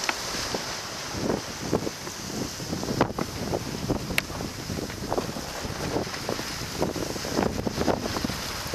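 Wind buffeting the microphone and the sea rushing and splashing along the hull of a sailboat driving to windward through choppy water, with irregular splashes from waves breaking at the bow and a single sharp tick about four seconds in.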